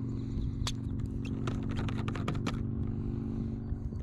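A screw cap being twisted off a plastic water bottle: a quick run of clicks and scrapes in the first half, over a steady low drone.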